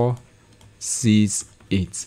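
A man's voice saying a few short words, with light clicking taps of a stylus on a pen tablet as numbers are written.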